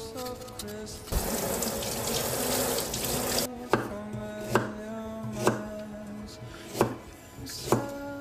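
A water tap runs for about two seconds. Then a chef's knife slices through ginger root onto a wooden cutting board, one sharp chop about every second, over soft background music.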